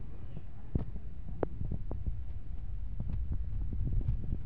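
Wind rumbling on the phone's microphone, with a few faint clicks scattered through it.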